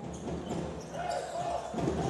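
Basketball game sound in an indoor arena: a steady crowd murmur, with a ball being dribbled on the hardwood court as a team brings it up.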